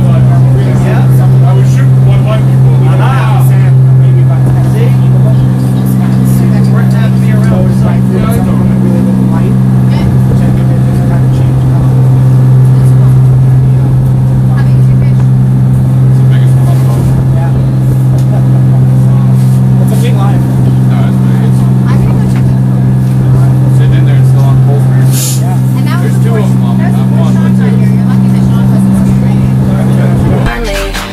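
A dive boat's engine running with a loud, steady low hum, heard from inside the boat's cabin.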